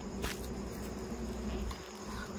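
Night insects, crickets among them, trilling steadily over a low rumble, with one brief click about a quarter second in.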